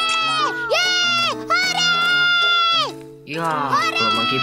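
A child's voice cheering in long, high, drawn-out shouts, three or four of them with a rising one near the end, over cheerful background music.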